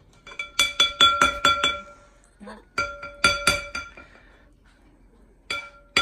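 Metal spoon clinking against the rim of a cut-glass punch bowl as scoops of sherbet are knocked off, each clink ringing briefly. A quick run of clinks comes about half a second in, a shorter run around three seconds, and a single clink near the end.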